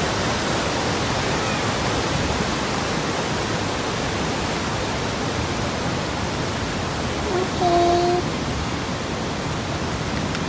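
Steady rushing of whitewater from a waterfall and river rapids pouring over boulders. About seven and a half seconds in, a short held voice sound rises briefly above it.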